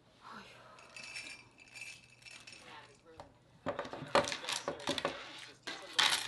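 A phone and other things being handled on a wooden table: a quick run of clicks and clinks starts a little past halfway and grows loudest near the end.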